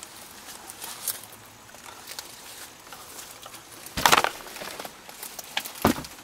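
A person shifting about in a cramped, cluttered space: faint light clicks, then two short scuffing rustles, one about four seconds in and one near the end.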